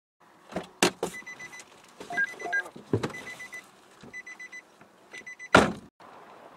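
Rapid short electronic beeps in runs of about five, repeated several times, amid sharp knocks and clunks; the loudest is a heavy thump near the end.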